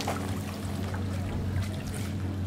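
Steady low hum of a running motor, with small waves lapping against a concrete pier block.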